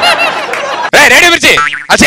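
A comedy sound effect with quick wobbling rises and falls in pitch, mixed with laughter, followed by a few words.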